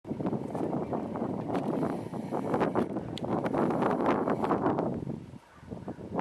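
Wind buffeting the microphone, with rustling and sharp clicks from a handheld camera being moved, easing off briefly near the end.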